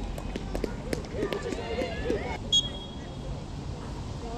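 Players' shouts and calls on an outdoor football pitch, with scattered short ticks and knocks in the first couple of seconds and a brief high steady tone about two and a half seconds in.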